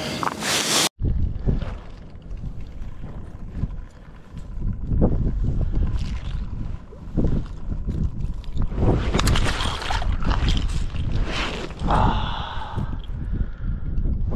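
Wind rumbling and buffeting on a head-mounted camera's microphone, with scattered short crunches and rustles of movement on snow-covered ice.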